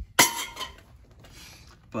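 A single sharp clink about a quarter second in, with a short ringing tail, followed by faint rustling.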